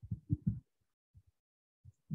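Several short, soft low thumps in quick succession in the first half second, then two fainter ones later, with silence between.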